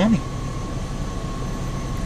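Steady blowing hum of a car's heater fan inside the cabin, with the engine running underneath and a faint steady whine.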